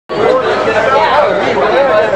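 People talking: indistinct, close-by chatter of voices.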